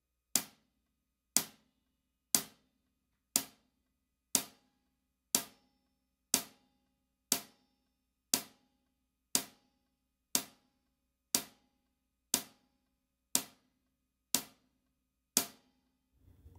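Drum-kit hi-hat struck with a stick in steady quarter notes, sixteen even strokes about one per second: four bars of a beginner's one-two-three-four count.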